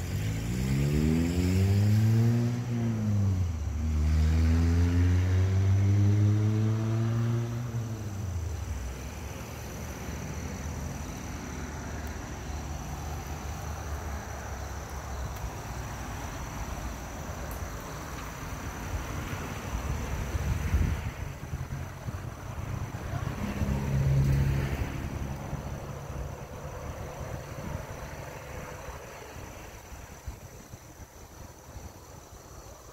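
A motor vehicle engine accelerating: its pitch rises, drops and rises again over the first eight seconds, then fades into steady background noise. A shorter engine swell comes about twenty-four seconds in.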